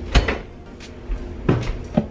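Household knocks and clunks as sauce bottles and food are put away in kitchen cupboards: one knock just after the start and two close together near the end.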